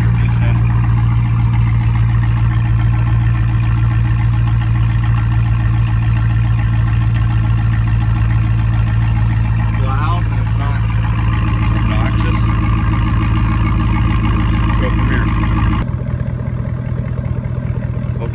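A 2005 Chevy Silverado's 5.3 L V8 idling steadily through its exhaust. About sixteen seconds in the sound abruptly changes and gets quieter.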